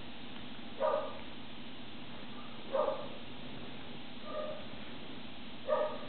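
Four short pitched animal calls, each about a third of a second, spaced roughly one and a half to two seconds apart, over a steady low hum.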